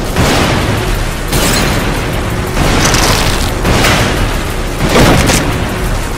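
A large explosion: a loud, continuous rumbling blast with stronger surges about every second.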